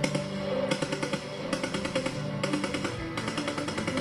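AK-74 assault rifle (5.45×39mm) firing rapid automatic bursts, heard over background music with a guitar.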